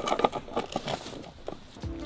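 Plastic wheel chock being set down on asphalt and pushed against a pickup's rear tyre: a few short scrapes and knocks, loudest in the first half-second, then quieter handling noise.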